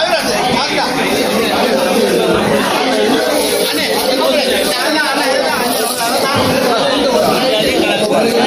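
Market crowd: many voices talking at once in a dense, continuous chatter, with the echo of a large hall.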